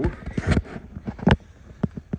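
Footsteps on a concrete floor: a few sharp, irregular steps, the loudest a little after a second in.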